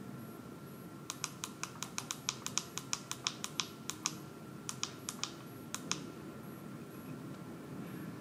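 Clicks from the small tactile push buttons on an Acrel ADW300 energy meter's keypad, pressed over and over to step the PT ratio value. There are about two dozen clicks at roughly four or five a second, some in quick pairs, starting about a second in and stopping about six seconds in.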